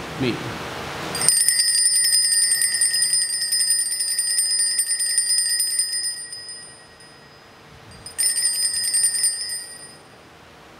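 Altar bells (a cluster of small sanctus bells) shaken in a rapid jingling peal lasting about five seconds and fading out, then a second shorter peal near the end. The bells mark the elevation of the chalice at the consecration.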